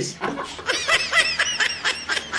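A man laughing hard: after a brief catch of breath, a rapid run of short, high-pitched laughs, about six a second, starting about half a second in.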